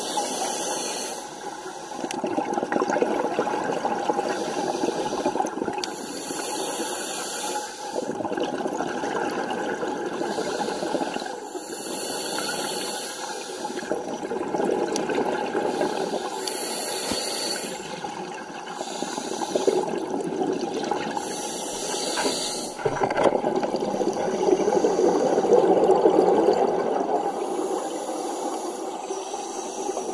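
Underwater scuba breathing through a regulator: a hissing inhalation about every five seconds, alternating with the rushing, bubbling exhaust of exhaled air, loudest in a long exhale near the end.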